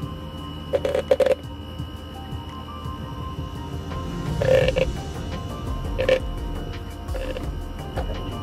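Soft background music, with a few short taps or knocks over it: two close together about a second in, then single ones about midway and near the end.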